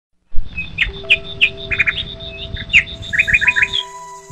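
Rapid songbird chirping, many short sliding chirps in quick runs, over soft music with long held notes. The chirping stops just before the end while the music carries on.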